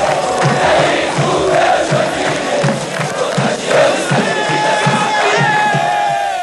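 Football supporters celebrating a championship win, cheering and chanting together over a steady beat about twice a second. In the last two seconds a single long held note rises above the crowd.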